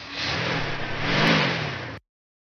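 Car engine sound effect of a car driving up and accelerating, the engine's pitch rising and falling back once in the middle, then cutting off suddenly.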